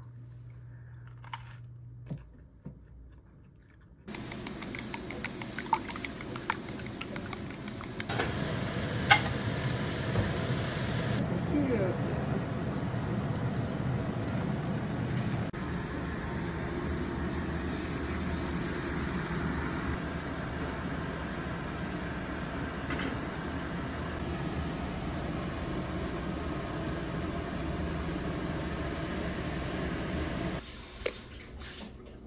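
Food sizzling in a hot frying pan on a gas stove while greens are stirred with a wooden spatula, steady after a quiet start, with a run of light taps and clicks early on.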